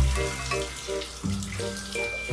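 Water spraying from a handheld shower head as a French bulldog is rinsed in a plastic tub, with background music playing throughout.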